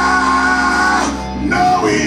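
A man sings a gospel song into a microphone over instrumental accompaniment with a steady bass. He holds one long note through about the first second, breaks off briefly, and starts a new phrase about a second and a half in.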